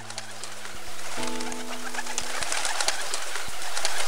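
A large flock of birds, a dense mass of short calls and chatter, with sustained music chords over it. A new chord comes in about a second in and fades out.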